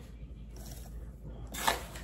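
Quiet stirring of a wire whisk in a glass measuring cup of coconut milk and sugar, with one short scrape about one and a half seconds in.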